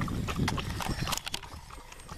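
Dogs lapping water from a river's edge, heard as a run of irregular clicks and slurps.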